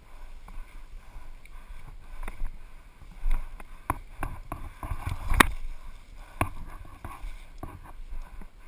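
Footsteps and rustling through tall grass, with irregular sharp knocks about once a second, the loudest about five and a half seconds in.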